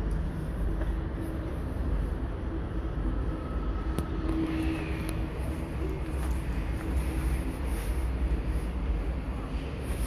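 Outdoor background noise: a steady low rumble like nearby road traffic, with a faint hum rising and fading in the middle seconds.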